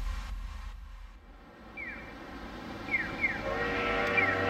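Electronic intro music fades out in the first second. Then comes quiet outdoor street ambience with a low steady hum and a few short, high, falling chirps.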